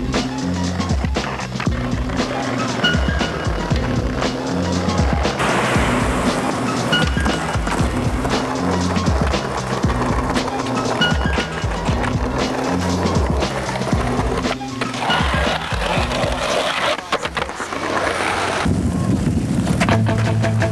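Skateboard sounds, wheels rolling on pavement with the clacks of tricks popped and landed, over a hip-hop beat with a repeating bassline. The music changes near the end.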